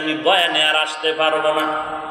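A man's voice preaching in a drawn-out, sing-song chant, held notes gliding up and down between short breaks, picked up through stage microphones.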